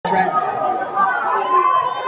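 Crowd chatter: many voices talking at once in a large arena crowd, a steady murmur with no single voice standing out.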